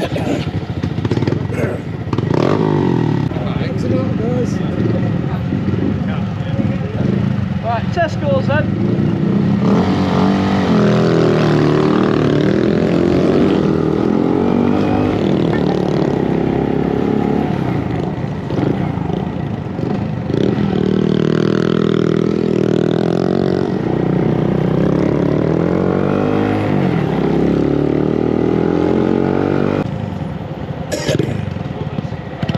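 Small motorcycle engines idling, then the rider's own bike pulling away and running along the road, its engine pitch rising and falling with the throttle and gear changes.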